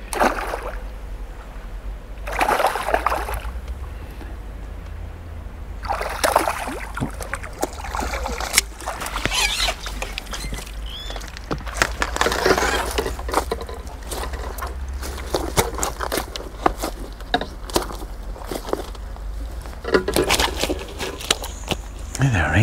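A hooked fish splashing and sloshing at the surface in irregular surges as it is played in on a pole and netted, followed by clicks and rattles of the landing net and rig being handled while it is unhooked.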